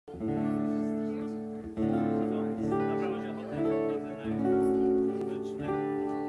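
Live guitar music: acoustic and electric guitars strumming sustained chords together, the chord changing about every second.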